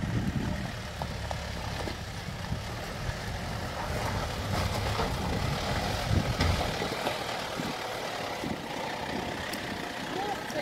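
Mitsubishi Shogun 4x4's engine running at low revs as it crawls down a rocky, wet trail, with small knocks of the tyres over stone. The low engine sound drops away about seven seconds in.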